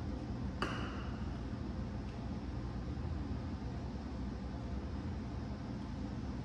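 Two dumbbell-shaped water bottles knocked together once by accident during an overhead press: a sharp clink with a brief ringing tone about half a second in, over a low steady hum.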